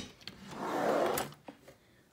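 Wooden kitchen drawer being pulled open: a short click, then a sliding rub lasting about a second, and a brief knock near the end.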